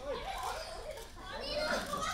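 Several high-pitched women's voices shouting and yelling over one another during a pro-wrestling match.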